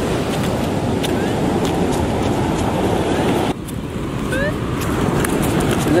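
Wind rushing over the microphone with the wash of surf behind it, dropping off abruptly about three and a half seconds in. A few faint, short rising chirps sound over it.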